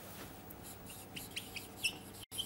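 Marker pen squeaking faintly on a whiteboard while writing, a few short high chirps in the second half.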